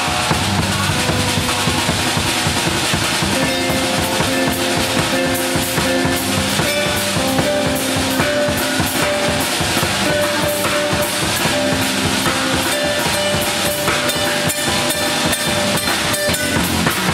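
Live instrumental band of drum kit and two guitars, one electric and one acoustic, playing a melody with held notes over a busy, steady drum beat.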